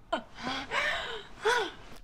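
A woman gasping, followed by a couple of short rising-and-falling vocal sounds.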